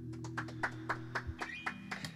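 A small audience begins clapping, scattered claps a few per second, while the band's last held chord rings out and stops about a second in.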